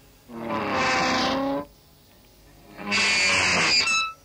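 Electric guitar music in two stop-start bursts, each just over a second long, each cutting off suddenly into a near-silent gap.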